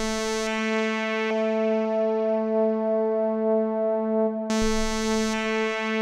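Bitwig Polysynth holding a single synthesizer note, its filter stepped by the ParSeq-8 parameter sequencer: the tone starts bright, turns duller about half a second in, brightens again about four and a half seconds in and dulls once more about a second later.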